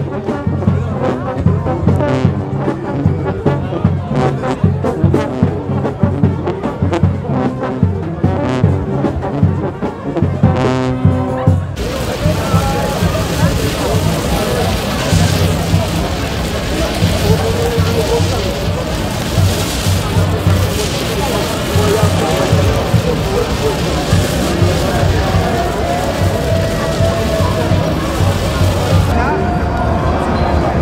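Brass music with a steady beat, cutting off abruptly about twelve seconds in. It gives way to a loud, even hiss from a burning red hand flare amid crowd noise.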